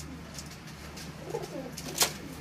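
Domestic pigeon cooing, one low call in the second half, over a steady low hum.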